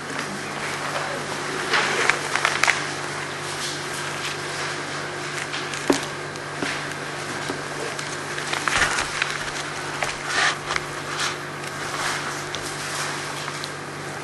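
Paper pages and a songbook rustling as they are leafed through, with a few light knocks, over a steady electrical hum.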